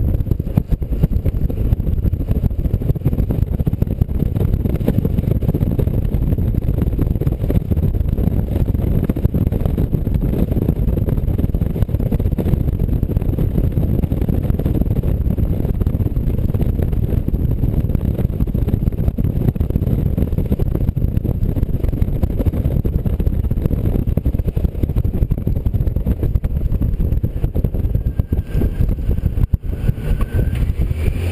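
Wind rushing over a GoPro microphone mounted outside a moving car, a steady loud low rumble, with the car's road noise beneath it. The loudness dips briefly near the end.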